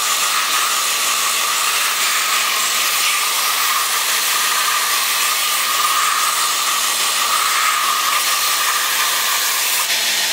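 Belt grinder running a coarse abrasive belt, sanding the edge of a leather axe sheath pressed against the contact wheel: a steady, even whir with a constant whine in it.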